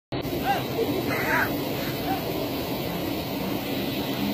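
Brief, indistinct voices over a steady, noisy background.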